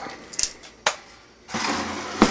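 Handling noise as a backup electric heat strip is worked out of its packing: a few sharp clicks and knocks in the first second, then a scraping rustle near the end.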